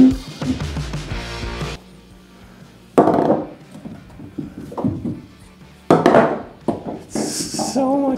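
Background music that cuts off about two seconds in. Then skee-ball balls are rolled up a wooden lane twice, about three seconds apart: each lands with a loud, hard knock and rolls on briefly.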